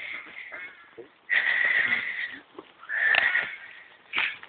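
Slow-moving overhead-line engineering train passing across the station tracks: a faint rumble with two hissing bursts, the first about a second long and the second about half a second.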